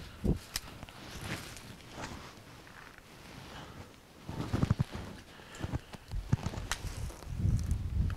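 Wading and splashing in shallow pond water and mud as a trapped beaver is hauled out of a 280 body-grip trap set, with a few sharp clicks and knocks among the thumps.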